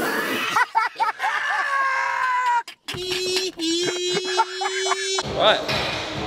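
A man's voice talking in short, wavering phrases, then a brief cut-out and a single steady held note of about two seconds that stops abruptly.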